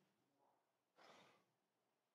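Near silence: room tone, with a faint breath about a second in.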